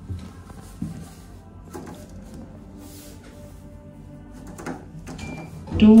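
Hydraulic lift car slowly levelling at a landing: a low steady hum with a few light knocks. The levelling is the slow, inefficient kind.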